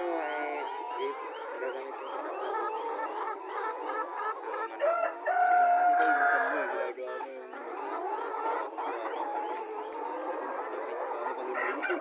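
A flock of chickens, mostly Black Australorps, clucking and calling over one another. About five seconds in, one bird gives a long, held call that is the loudest moment.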